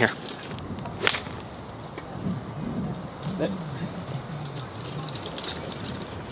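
A golf wedge striking the ball on a low, three-quarter pitch shot: one crisp click about a second in.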